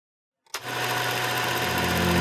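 Electronic intro music under an animated logo, starting abruptly about half a second in as a dense buzzing texture with steady held tones; a deep bass tone comes in near the end.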